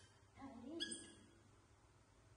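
Baby macaque calls: a low wavering sound, then a brief high-pitched squeal about a second in.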